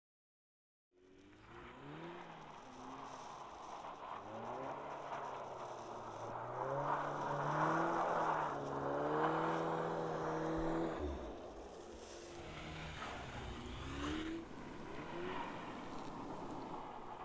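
Audi S3 Cabriolet's turbocharged four-cylinder petrol engine revving up and down under load as the car drifts on snow, starting about a second in, with the hiss of tyres churning through snow underneath.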